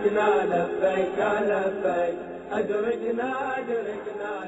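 A devotional chant sung in a melodic, wavering voice, with long held notes.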